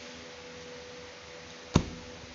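Steady low hiss with a single faint humming tone, broken once near the end by a short, sharp knock.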